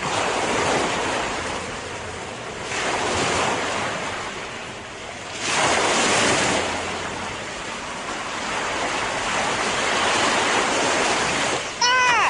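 Ocean surf sound effect: waves washing in and out, swelling and fading every few seconds. A short pitched sound comes right at the end.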